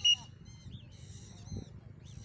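A short, loud, steady high whistle right at the start, followed by a few faint high chirping calls from birds flying overhead.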